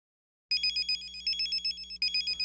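A two-way pager's electronic alert beeping: rapid, repeated high-pitched chirps that start about half a second in.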